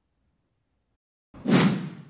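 Dead silence for over a second, then a short whoosh transition sound effect that swells suddenly and fades away.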